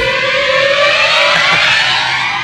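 A loud siren-like tone, several pitches together, that starts suddenly and glides slowly upward, with a hiss over it.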